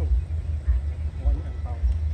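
Steady low rumble of a high-pressure gas burner running full under a cooking pot.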